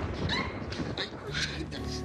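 High-pitched whimpering vocal squeals in short rising and falling glides, then soft background music with steady held notes coming in about halfway through.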